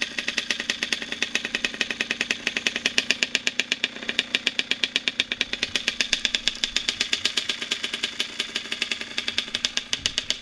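A 2000 Kawasaki KX80 two-stroke engine idling steadily, an even popping of about nine pulses a second.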